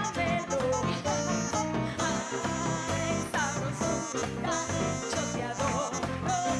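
Live merengue band with alto saxophone playing at a fast, steady beat, with a woman singing over it at times.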